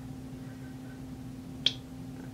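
One short, sharp click a little after one and a half seconds in, over a steady low hum.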